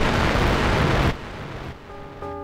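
A loud, even rush of hiss-like noise within a rap mix, cutting off about a second in and leaving a much quieter lull.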